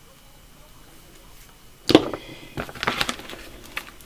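Washi tape rolls being handled over a plastic bin: one sharp knock with a brief high ringing about halfway through, then a quick run of clicks and light rustles as the rolls are sorted.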